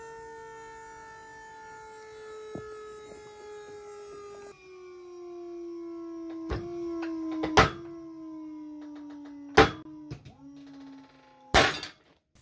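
Pull-test rig's motor humming steadily, its pitch slowly sinking as the load builds on a rope tied with alpine butterfly knots. Sharp cracks and pops come from the loaded rope and knots, the loudest about seven and a half and nine and a half seconds in. A final burst of cracks near the end, as the rope breaks, is followed by the hum stopping.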